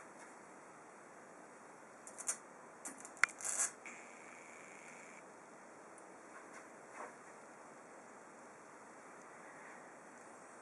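A small MOSFET-driven Tesla coil runs with a faint steady hiss. A few short sharp crackles and clicks come between about two and four seconds in, as a fluorescent tube is held against its top ball and lit by the coil's field.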